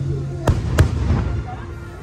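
Aerial firework shells bursting: two sharp bangs about a third of a second apart, about half a second in, with background music playing underneath.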